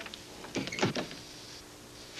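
A few short clicks and knocks about half a second in, the loudest a dull knock near the middle, over a faint steady hum.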